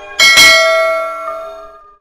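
Notification-bell sound effect from a subscribe animation: a bright bell ding struck about a fifth of a second in, ringing out and fading away over about a second and a half.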